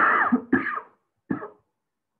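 A man coughing and clearing his throat: three short bursts, the first two close together, the last about a second and a half in.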